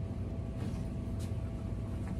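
Steady low outdoor rumble with a faint, brief swish about a second in.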